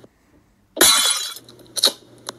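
Glass-shattering sound effect: a loud crash of breaking glass about a second in, lasting about half a second, then a short sharp crack near the end.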